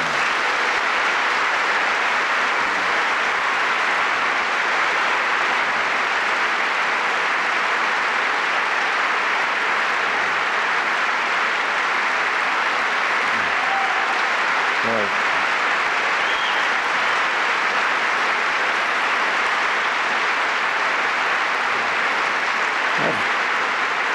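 Audience applauding, breaking out all at once and holding steady.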